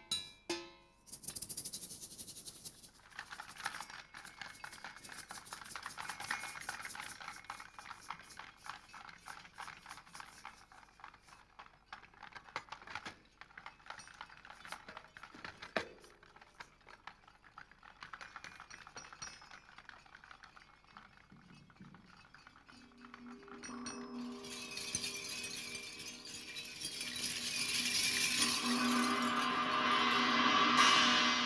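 Solo percussion on cymbals and hanging found-object rattles and shakers. For most of the time there is a dense, irregular rattling. In the last quarter, ringing metallic tones and cymbal wash swell in and grow louder.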